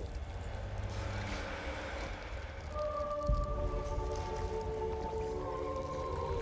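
Film trailer soundtrack: a low rumble under the score, with several sustained held notes coming in a little under halfway through and a deep boom about halfway through.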